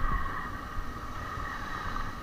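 Motorcycle riding slowly over a rough dirt road: a low engine and wind rumble under a steady high-pitched drone.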